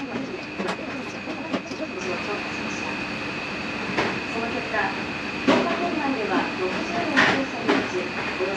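A metal spoon clicking against a steel curry tray and bowls about six times, the loudest clicks in the second half, over a steady high-pitched hum and faint background voices.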